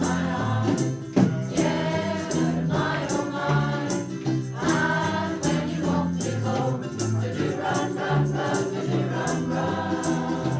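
A women's community choir singing together from song sheets, the many voices holding sustained sung notes, over a steady beat.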